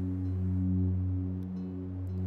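Background music: a steady, low ambient drone with a few sustained overtones, swelling slightly in the middle.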